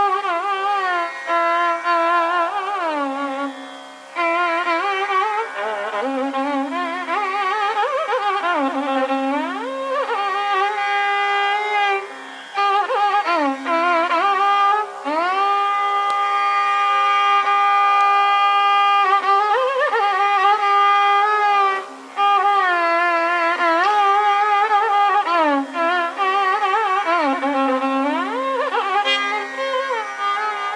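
Carnatic classical music in raga Pantuvarali: a melody that keeps wavering and sliding between notes in quick ornaments, with one long held note about halfway through.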